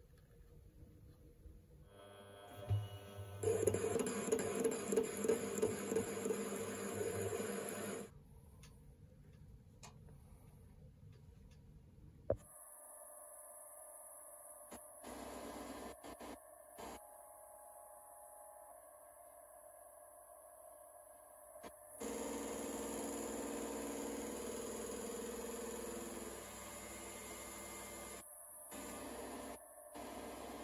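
ED400FD bench metal lathe running with its spindle turning, while the NEMA 23 stepper motor of the electronic lead screw drives the carriage. Two louder runs of several seconds each stand out against quieter running between them, with a single sharp click near the middle.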